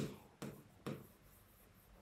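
Pen writing on the glass of an interactive display: two short taps with a brief scrape, about half a second apart, then faint.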